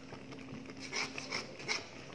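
Metal spatula stirring and scraping thick, sugary soursop jam in a frying pan as it cooks down, with a few short scrapes about a second in and near the end.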